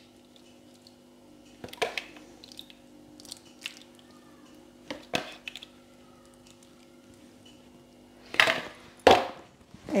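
Ladle clicking lightly against the bowl and tart dish as cream is poured into a quiche, over a steady low hum, with two louder scraping noises near the end.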